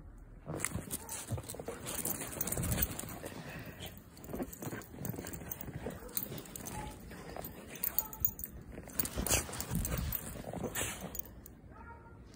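A small terrier-mix dog moving about and sniffing in snow, with irregular crunching of snow underfoot.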